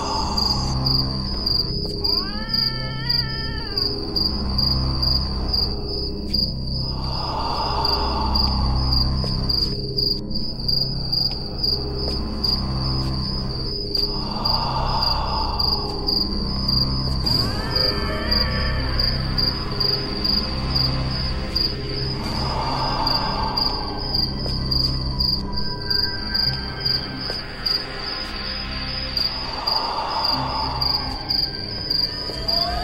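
A steady, high chirping of crickets over dark background music. The music has a low pulsing beat and a swelling tone about every seven to eight seconds. A wavering, wailing glide rises and falls twice, about two seconds in and again around seventeen seconds.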